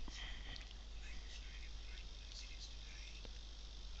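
A few faint computer keyboard keystrokes, the end of a typed formula, over a low steady hiss.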